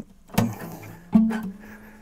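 New phosphor bronze strings on a steel-string acoustic guitar being pulled and let go to stretch them in, so that they will hold their tuning. They twang twice, about half a second and just over a second in, and the second note rings on.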